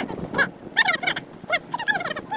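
Bird chirping repeatedly: a quick run of short, high calls, each falling in pitch.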